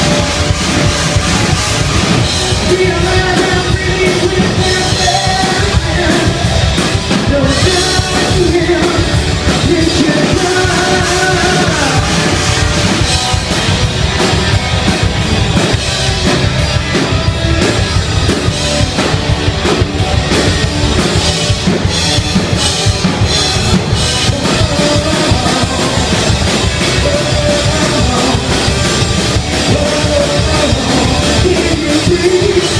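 Rock band playing a song with electric guitars, a drum kit and a male lead singer, loud and continuous.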